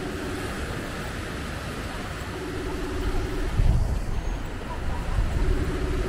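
Seaside ambience of small waves washing on a sandy beach, with wind gusting on the microphone from about halfway through. A short low tone sounds about every three seconds, lasting about a second each time.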